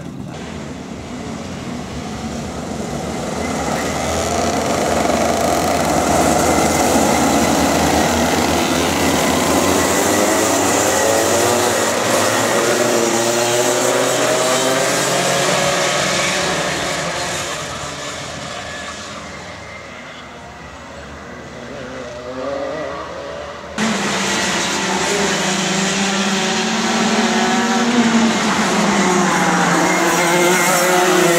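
A pack of two-stroke Rotax Max racing karts going past at speed, many engines revving at overlapping pitches that rise and fall. The sound builds, fades, then changes abruptly about 24 seconds in to a nearer kart engine.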